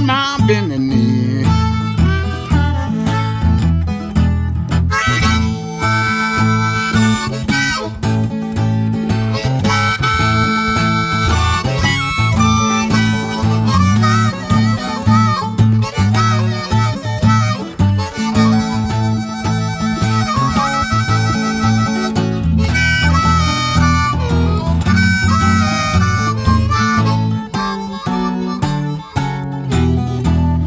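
Blues harmonica playing a solo with long held notes over a steady acoustic guitar rhythm and bass line, in an instrumental break between sung verses.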